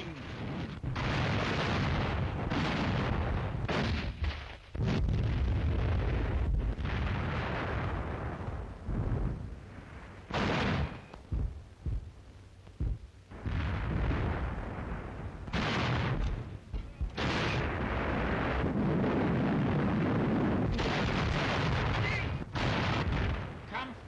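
Battle sound of artillery and tank-gun fire with shell explosions: a string of sudden blasts, each trailing off in a deep rumble, with a quieter stretch near the middle, on an old wartime newsreel soundtrack.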